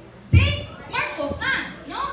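Speech: a high-pitched voice talking in short phrases, starting about a third of a second in.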